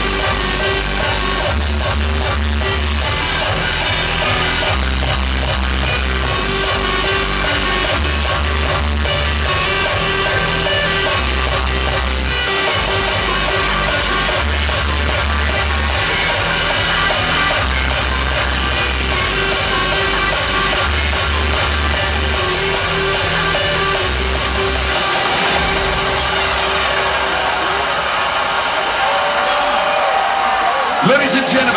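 Hardstyle dance music played loud over a venue's sound system during a live DJ set, with a heavy bass line that shifts note about every second.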